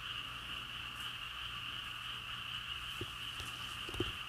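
Faint, steady night chorus of calling frogs or insects: a continuous high-pitched trill that does not let up, over a low steady hum, with a couple of soft ticks near the end.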